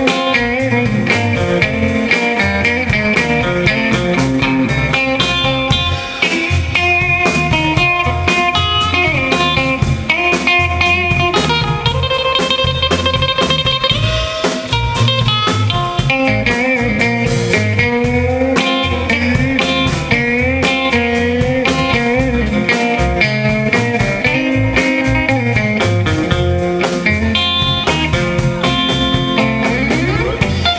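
Live blues band playing an instrumental passage: electric guitar lines with bent notes over electric bass and a steady drum-kit beat.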